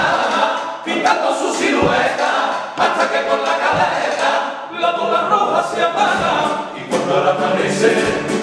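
Male carnival comparsa choir singing a Cádiz pasodoble in Spanish, many voices together in harmony in full voice, with the sung phrases breaking off and starting again. Spanish guitar accompaniment sits under the voices.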